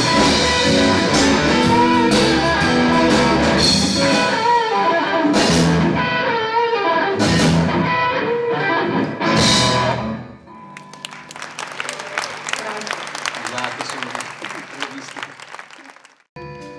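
Live blues-rock band with electric guitars, bass and drums playing loud, with a few sharp crashing ensemble hits. The band stops about ten seconds in, leaving a much quieter crackling patter over a low held note.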